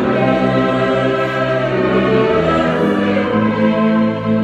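Tuba close to the microphone playing the bass line of a hymn in held notes that change pitch every second or so, under congregational singing and a full instrumental ensemble.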